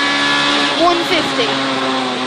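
Rally car engine heard inside the cabin of a rear-wheel-drive Ford Fiesta, running hard at high revs and holding a steady pitch as the car drives flat out along the stage.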